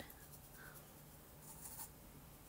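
Faint soft swishing of a fluffy makeup brush sweeping powder highlighter over the cheek, a little louder about one and a half seconds in, over near-silent room tone.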